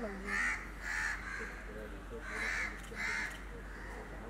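A crow cawing about five times, short calls that come roughly in pairs.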